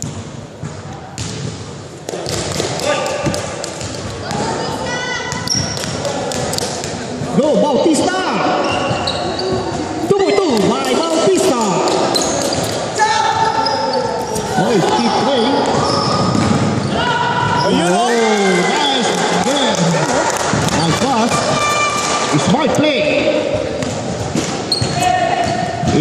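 Basketball game on a hardwood gym floor: a ball being dribbled and bounced, sneakers squeaking, and players calling out to one another, all echoing in a large hall.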